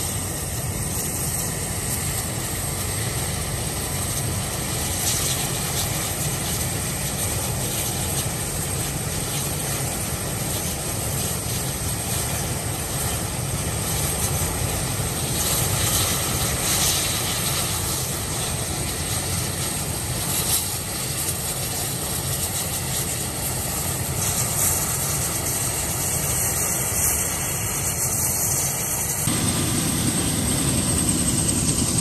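UH-60 Black Hawk helicopters running on the ground, a steady engine and rotor noise. The sound shifts abruptly just before the end.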